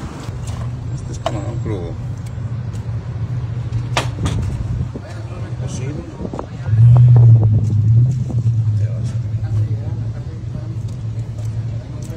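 Low, steady engine hum of a motor vehicle idling, swelling louder for about a second around seven seconds in, with a few sharp clicks and faint voices.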